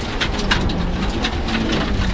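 Honda Civic rally car at speed, heard from inside the cabin: a steady drone of engine and tyre-on-road noise, with a scatter of short sharp ticks throughout.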